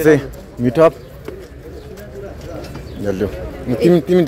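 People's voices in short bursts near the start and again in the last second, with a quieter stretch in between.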